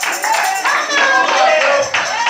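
Church music with a quick, steady beat of about four hits a second and singing voices over it.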